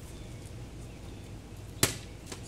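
A plastic water bottle lands on an asphalt driveway after being flipped: one sharp smack near the end, over steady outdoor background.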